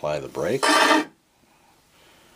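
A hand pressed against the rim of a spinning wind-up phonograph turntable, rubbing and rasping as it brakes the platter to a stop. The sound is like brake pads. It cuts off about a second in as the platter halts.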